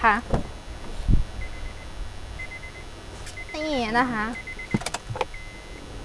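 A car door opening with a low thump about a second in, followed by the Honda Civic's door-open warning chime: a faint, high, rapid beeping that carries on. A few sharp clicks come near the end.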